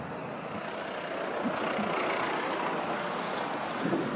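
Passing road traffic: a steady rushing noise with no engine note, swelling a little in the middle.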